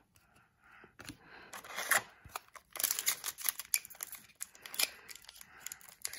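Foil wrapper of an SP Authentic hockey card pack crinkling and tearing open under the fingers: a run of small crackles and rustles that starts about a second in and grows busier about halfway through.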